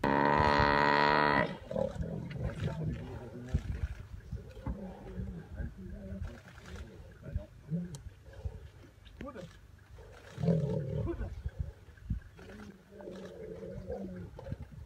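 Lions attacking a Cape buffalo: a loud, steady, drawn-out low call for about the first second and a half, then scattered low bellows and growls, louder again near the end.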